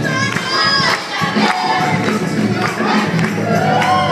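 Gospel choir singing, with congregation voices and shouts mixed in.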